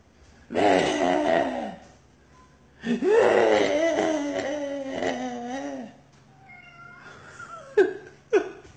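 A man's voice: a sigh, then a long wavering moan lasting about three seconds, followed by a faint thin whine near the end.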